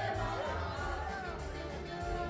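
Karaoke: a small group of amateur singers singing into microphones over a backing track with a heavy bass line, all through the venue's PA.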